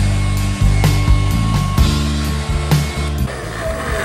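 Handheld hair dryer blowing steadily over wet acrylic paint spotted with alcohol, drying it to stop the alcohol from spreading further and fix the effect. Background music plays underneath.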